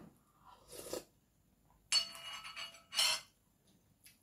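A sip of soup from a spoon, then a metal spoon clinks against a bowl about two seconds in and rings briefly, followed by another short clatter of tableware.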